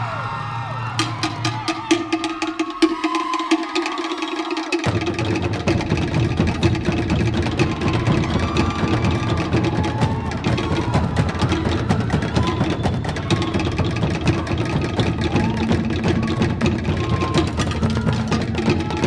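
Tahitian ori drum ensemble playing a fast, driving beat: rapid wooden slit-drum (to'ere) strokes start about a second in, and deep bass drums join about five seconds in.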